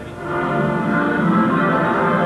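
Opening music of a DiscoVision videodisc, played on a Magnavox videodisc player through a TV set's speaker. It swells up about a third of a second in as the volume is turned up, then holds steady.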